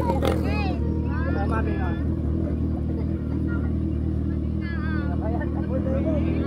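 Kawasaki ZX-6R's inline-four engine idling steadily at a low, even note, with no revving.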